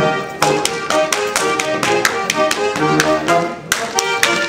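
Bavarian folk dance music with fiddle, crossed by a rapid run of sharp slaps from a Schuhplattler dancer striking his thighs and shoe soles in time with the tune.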